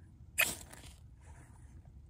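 A knife spine struck once down a ferro rod over dry grass tinder, a short sharp scrape about half a second in.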